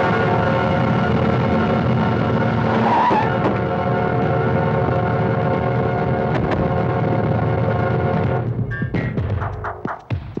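Dramatic film background score: a long, loud held chord for about eight seconds, breaking into short stabbing hits near the end, with car engine and tyre noise mixed in.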